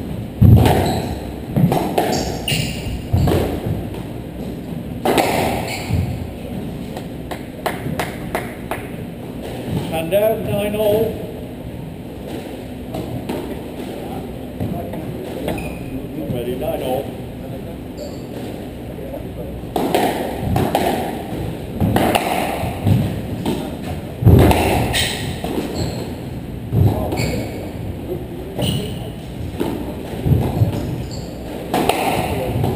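A squash rally: the ball cracks off rackets and the court walls in sharp, irregular hits about a second or two apart.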